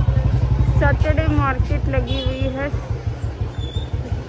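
Motorcycle engine running at low speed with a steady, fast low pulse, heard close from the rider's seat, with voices talking over it.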